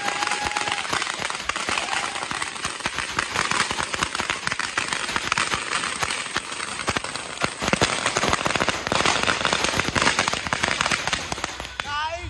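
Firecrackers bursting on a road: a continuous rapid crackle of many small bangs in quick succession, getting a little louder in the last few seconds.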